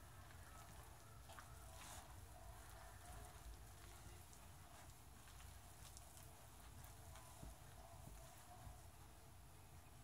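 Near silence with faint soft rustling and a few light ticks: a hand mixing flour for pizza dough in a glass bowl.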